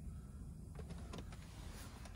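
Faint, steady low hum inside a parked car's cabin, with two faint clicks about a second in.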